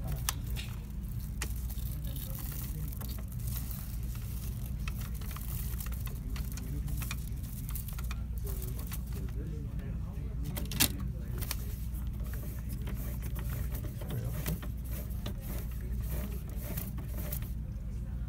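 Small handling clicks and rustles from threading a thermal-transfer ribbon around the spindles and printhead of a Zebra ZT410 label printer, with one sharp click about eleven seconds in, over a steady low hum.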